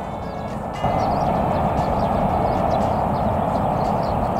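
Steady rumble of passing vehicle traffic, growing louder about a second in and then holding.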